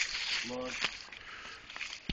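Footsteps through dry fallen leaves, with scattered rustles and small crackles, and a short voice sound about half a second in.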